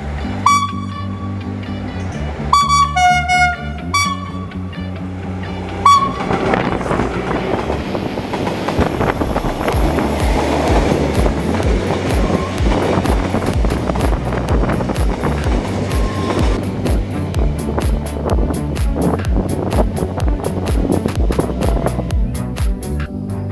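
Background music with a real train's horn giving several short toots in the first few seconds, then the steady rumble of a freight train's wagons passing close by.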